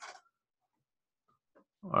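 Near silence, with a brief faint noise at the very start and a man's voice starting just before the end.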